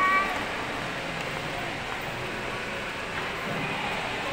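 Busy shopping-mall ambience: a steady murmur of shoppers' indistinct voices and footsteps. A short high-pitched, voice-like cry comes right at the start.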